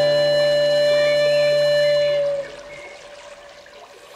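A flute holding one long steady note over a low sustained drone, both ending about two and a half seconds in and leaving a faint hiss of noise.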